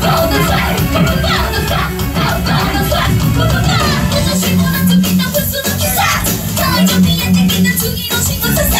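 Live pop band performance: female voices singing into microphones over electric bass and drums, loud and continuous.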